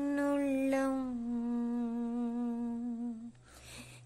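Unaccompanied solo voice holding one long note of a Tamil Christian song. The pitch steps down slightly about a second in, and the note ends a little after three seconds, followed by a brief breath.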